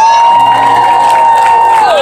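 A long, high whoop of praise shouted close by, held on one note and dropping away at the end, with a congregation cheering in the background.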